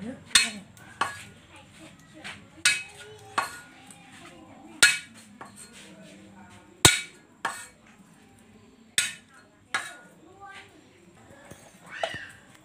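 Cleaver chopping on a thick round wooden chopping board: about ten sharp, separate chops at an uneven pace, one standing out loudest near the middle.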